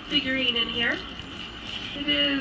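A woman's voice for about the first second, then quieter.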